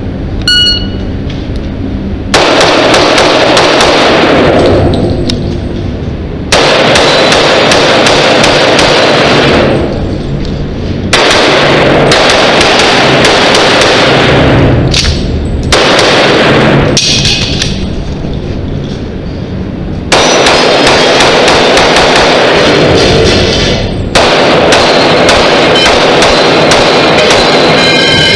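An electronic shot-timer start beep, then a pistol fired in fast strings of shots, so loud that the microphone is overloaded and each string runs together into a long stretch of continuous noise. The strings last about three to four seconds each and are split by brief pauses between positions, over a stage that the timer puts at 26.83 seconds.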